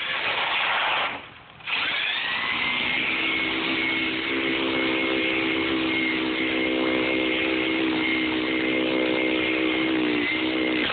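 Traxxas Stampede VXL RC truck's brushless motor running under throttle with a high whine. It drops out briefly about a second in, then comes back with a rising whine that settles into a steady high pitch, with a lower hum joining underneath.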